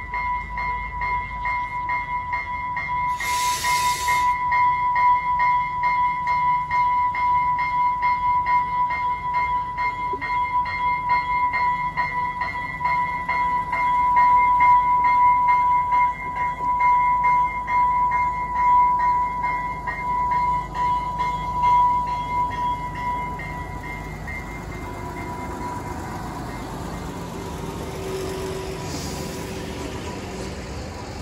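Diesel passenger railcar pulling slowly into a platform, its engine running low underneath a steady, rapidly pulsing bell tone that fades out about 24 seconds in. A short burst of air hiss comes a few seconds in, and a fainter one near the end.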